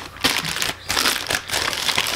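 Clear plastic bag crinkling as it is handled and pulled off an electric starter motor, irregular crackling throughout.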